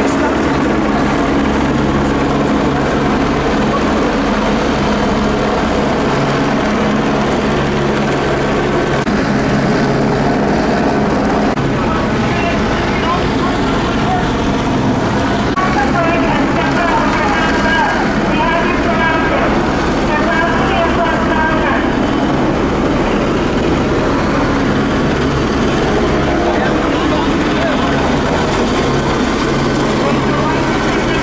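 Steady engine drone with a low hum, and indistinct voices partway through.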